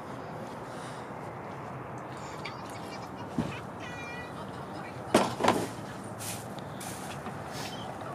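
Microfiber towel wiping rubbing alcohol over a carbon fiber car hood: faint soft swishes over a steady background hum, with a brief louder sound about five seconds in.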